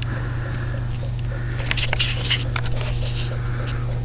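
Steady low electrical hum from the plugged-in supply of a home-made hydrogen (HHO) electrolysis cell drawing about 7 amps. Over it is faint fizzing of gas bubbling through the baking-soda electrolyte, with a few small clicks about two seconds in.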